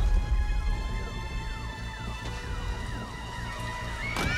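An electronic alarm wailing in rapid falling sweeps, about four a second, over a held musical tone and a low rumble.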